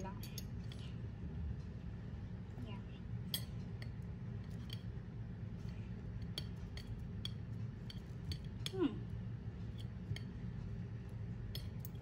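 A metal fork clicking and clinking lightly and irregularly against dishes while olives are picked out and dropped into a stainless steel salad bowl, over a low steady hum.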